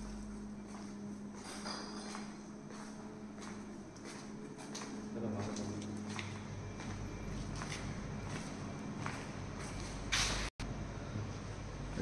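Footsteps on a tiled floor at a walking pace, about two steps a second, over a low steady hum. About ten seconds in there is a brief loud burst of noise, then a momentary dropout.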